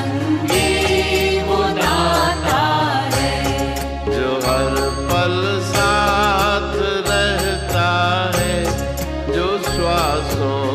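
Devotional Hindi bhajan music: a bending melody line over a steady percussion beat and bass.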